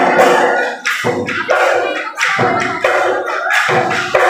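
Live Bihu music led by Assamese dhol drums, with quick, sharp strokes in a dance rhythm. The deep drumming thins out for stretches in the middle and comes back in full near the end.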